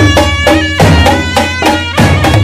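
Live procession band: a barrel-shaped dhol and a smaller drum beat a quick, steady rhythm of about three to four strokes a second, while a clarinet plays a stepping folk melody over them.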